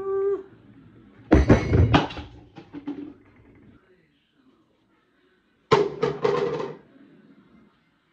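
A woman's wordless voice: a held 'woo' trailing off at the start, then two loud, sudden vocal outbursts, about a second and a half in and near six seconds in.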